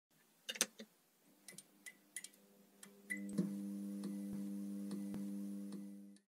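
Logo-intro sound effect: a few scattered ticking clicks and short high pings, then from about three seconds in a steady low humming tone with overtones, with a few more clicks over it, dropping away near the end.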